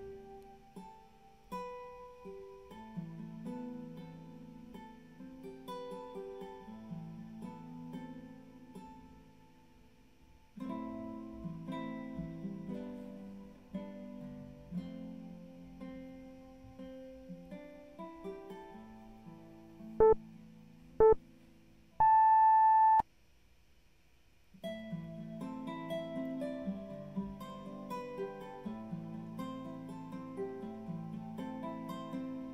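Acoustic guitar background music, broken by a workout interval timer's countdown beeps about two thirds of the way in: two short beeps a second apart, then one longer beep, marking the end of the timed pose. The music stops for about two seconds after the long beep, then starts again.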